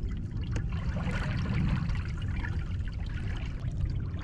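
Small waves lapping and trickling against a plastic kayak hull, over a steady low wind rumble on the microphone.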